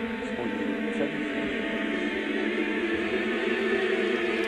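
Choral music: massed voices holding long sustained notes, slowly swelling in loudness.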